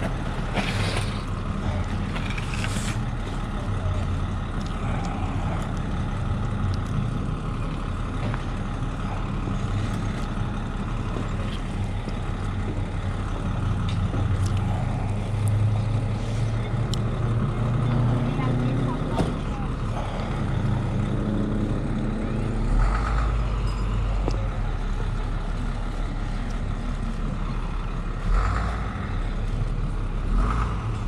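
Steady low rumble of motor vehicle traffic, with an engine growing louder through the middle. Voices murmur in the background, and there are a couple of low thumps near the end.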